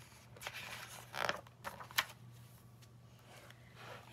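A picture book's paper pages being handled and turned: a few soft rustles and one sharp flick about two seconds in.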